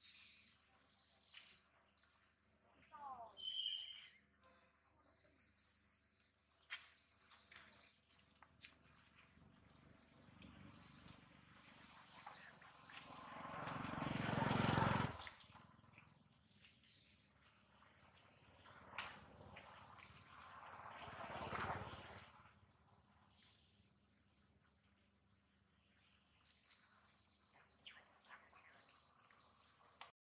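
Small birds chirping and calling over and over in short high notes. Two swelling rushes of noise rise and fade, the louder one about halfway through and a shorter one a few seconds later.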